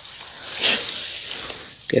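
Rustle of a green non-woven fabric bag being pulled open: a soft hiss that swells and fades over about a second.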